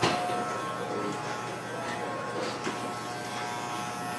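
Electric Oster barber clipper running with a steady, even buzz, with a few faint clicks over it.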